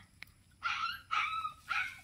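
A dog barking: three short barks about half a second apart.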